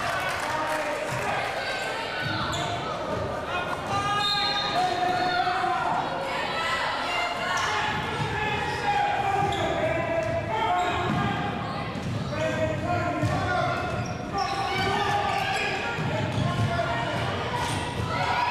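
A basketball bouncing on a hardwood gym floor during play, with indistinct shouting voices echoing through the large hall.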